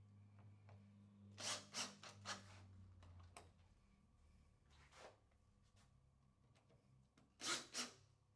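Cordless drill/driver screwing a threaded insert nut down into a hole drilled in MDF, heard faintly: a low motor hum for the first few seconds with short scraping and rubbing noises as the insert bites into the wood. A last, louder scrape comes near the end.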